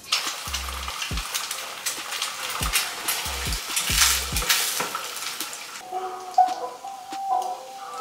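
Eggs frying in hot oil in a frying pan, sizzling steadily, while a utensil stirs and scrapes them in the pan.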